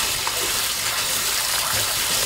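Kitchen tap running steadily into a stainless steel bowl of perilla leaves in a metal sink, splashing as hands rinse the leaves.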